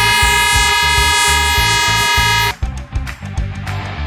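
Handheld compressed-air horns sounding one long steady blast that cuts off about two and a half seconds in: the start signal for the race. Background music with a steady beat plays underneath.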